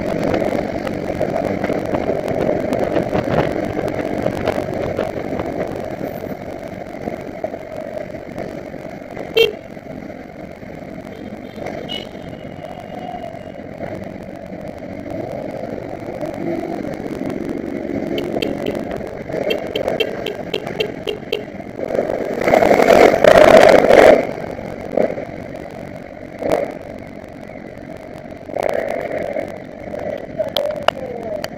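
Motorcycle engines, among them a Honda CBR1000RR's, running at low speed in town traffic, heard from a helmet-mounted camera. The engine sound eases off in the middle, and about three quarters of the way through there is a loud burst of noise lasting about two seconds.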